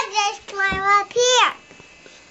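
A young boy's high voice in wordless sing-song vocalizing, several short notes sliding up and down, stopping about one and a half seconds in.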